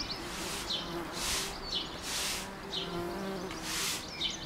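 Bumblebees, taken for tree bumblebees (Bombus hypnorum), buzzing at a nest-box entrance: a low wingbeat hum that swells about three seconds in. Small bird chirps and short bursts of hiss, about one a second, sound over it.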